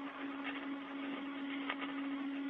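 Open space-to-ground radio channel with no one talking: a steady hiss with a constant humming tone under it, and two brief clicks.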